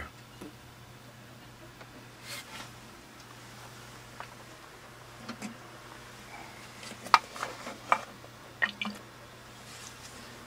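Camera handling noise: a few scattered light clicks and knocks over a faint steady low hum.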